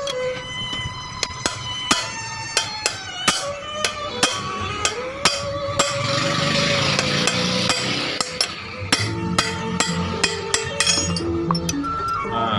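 Steel hammer blows on a punch set against a small chainsaw's crankshaft, knocking the crank pin out to free the connecting rod: a run of sharp metallic taps, about two to three a second, with a short lull midway. Background music plays underneath.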